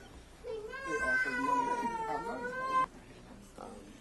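A high-pitched wailing cry, held for about two seconds, sliding slightly down in pitch and cutting off abruptly, over low murmuring voices.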